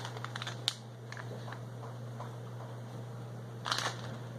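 Faint clicks and crinkles of a clear plastic soft-bait package being handled, with a brief louder rustle near the end, over a steady low hum.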